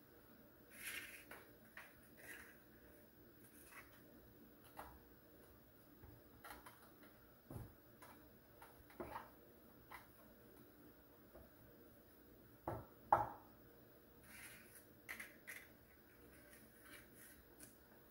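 Faint, scattered light taps and scrapes of a dough ball being rolled by hand in cinnamon powder in a metal baking pan, with two sharper knocks about two-thirds of the way through.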